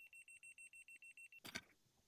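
Faint rapid beeping from a laser level detector on a grade rod, about seven short high beeps a second, stopping after about a second and a half. A single faint knock follows.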